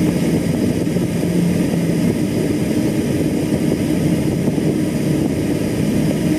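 Steady mechanical drone of a ship's engines and machinery, with a low hum over a constant rushing noise.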